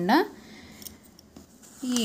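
A few faint metallic clicks and scrapes from a steel spatula moving raw peanuts around in a stainless steel kadai.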